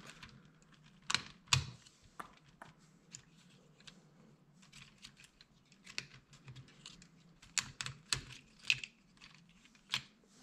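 LEGO Technic plastic pieces clicking and clacking as parts are pried off the model by hand: irregular sharp clicks, more of them close together near the end.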